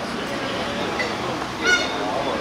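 A short, high-pitched honk, about a fifth of a second long, near the end, over steady street noise and voices.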